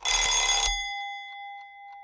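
Countdown timer's time-up sound effect: a loud, bright bell-like ring that lasts under a second, then a single tone that fades away.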